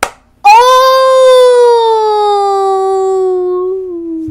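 A short sharp sound, then one long, loud voice-like note that starts about half a second in, is held for nearly four seconds and slides slowly down in pitch.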